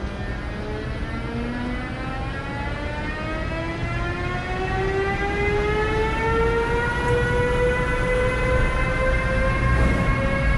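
Siemens Vectron electric locomotive (Czech Railways class 193) pulling a train away from a standstill: its traction converters give a whine of several tones that climbs steadily in pitch as it picks up speed, over a low rumble that grows louder as it passes.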